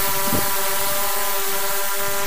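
Hubsan X4 Pro H109 quadcopter's electric motors and propellers buzzing at a steady pitch as it flies, with no change in speed.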